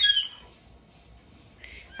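A nine-month-old baby's brief high-pitched squeal at the start.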